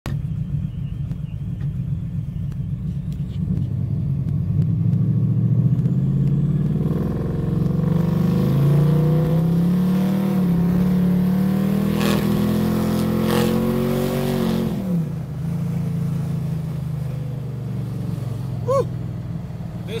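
Supercharged 1995 Chevrolet Impala SS's 5.7-litre V8 heard from inside the cabin while driving. It starts at a steady low drone, then accelerates with rising pitch from about seven seconds in, and lets off sharply around fifteen seconds back to a steady cruise.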